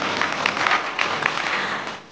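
A roomful of people applauding, a dense patter of many hands clapping that dies away near the end.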